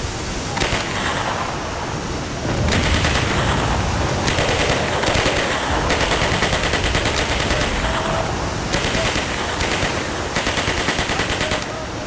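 Bursts of rapid automatic machine-gun fire, recorded from a WWII-era weapon: several long bursts starting about three seconds in and going on until just before the end, each a fast even string of shots, over a steady rushing background.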